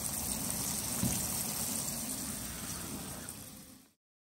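Battered flounder frying in a pan of hot oil, a steady sizzle with a light knock about a second in, fading out near the end.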